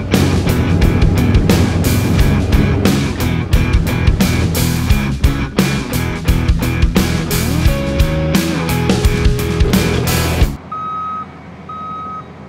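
Background music with a heavy drum beat, which cuts off abruptly about a second and a half before the end. In its place a compact track loader's reversing alarm beeps about once a second over the low hum of the machine.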